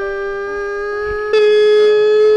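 A long, steady held note, like a music or sound-effect sting, with a second, lower note joining about half a second in. The sound gets louder about a second and a half in.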